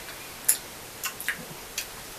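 A few light, short clicks and ticks, the clearest about half a second in, over quiet room noise.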